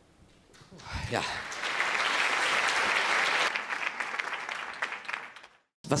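Audience applauding: the clapping builds about a second in, holds for a couple of seconds, then fades and breaks off abruptly just before the end.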